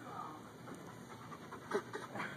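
A dog panting, with one short, sharp sound about three-quarters of the way through.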